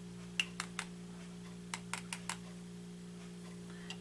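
Light, sharp plastic clicks from a buffer dipper and a clear shotgun hull as granulated shot buffer is poured in around powder-coated #000 buckshot pellets: three quick ticks under a second in, then four more around two seconds. A steady low hum runs underneath.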